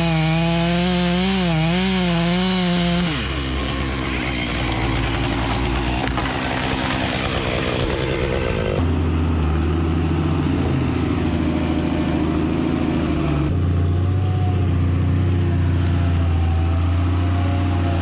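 Chainsaw running at high revs in a cut for about the first three seconds, its pitch wavering under load, then dropping back. After that, the steady low running of a log skidder's diesel engine.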